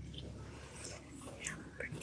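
Faint whispering and small rustles in a quiet church, with a few soft clicks.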